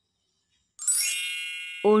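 A bright chime sound effect: a single ding of several high tones at once, striking about a second in and ringing down over the next second. A voice begins saying "six" at the very end.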